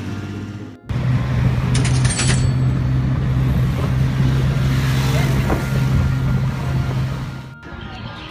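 A motor vehicle's engine running at a steady pitch: a loud, even drone mixed with traffic noise, with a short rattle about two seconds in. It starts abruptly after a quieter first second and cuts off near the end.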